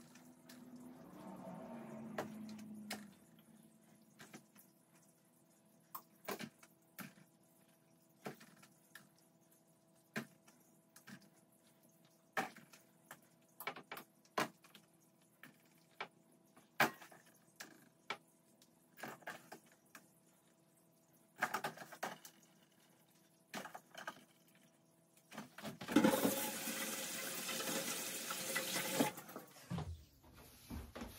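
Scattered light clicks and knocks of hand work at a kitchen counter over a faint steady hum, then a kitchen tap running for about three seconds near the end, as hands are rinsed.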